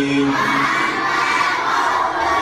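A man's held, chanted recitation ends within the first second, and a group of children comes in loudly together, reciting in unison as they repeat the memorised text after him.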